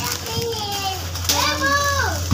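A young child's high-pitched voice making short vocal sounds, without clear words: one brief call about half a second in and a longer rising-and-falling one near the end. A steady low hum runs underneath.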